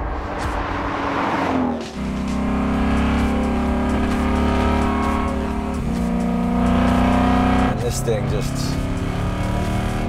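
Whipple-supercharged V8 of a Shelby Terlingua Mustang on light throttle. The car goes by with a falling pitch over the first two seconds. Then the engine is heard from on board, running steadily, with a step in pitch about six seconds in and a drop near eight seconds.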